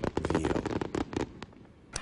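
Aerial fireworks crackling in a rapid string of sharp pops that thins out and fades after about a second and a half.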